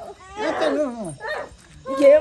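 A person wailing in distress: a loud, high cry about half a second in that slides down in pitch, then a shorter cry after it.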